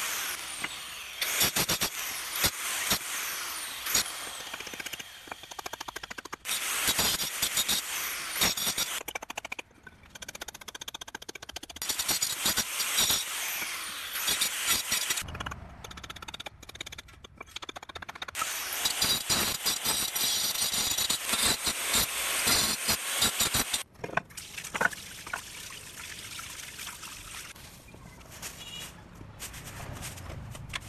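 Handheld electric marble cutter sawing into a red brick in several spells of a few seconds each, with sharp knocks of a hammer and chisel chipping the brick in between.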